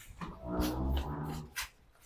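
A young girl whimpering, a low crying moan held for about a second, followed by a short click.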